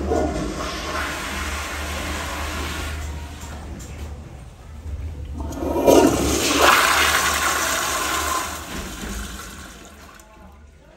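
Tankless Toto commercial toilet flushing, with a rush of water through the bowl for about four seconds. A second, louder rush starts about five and a half seconds in and fades toward the end as the bowl refills.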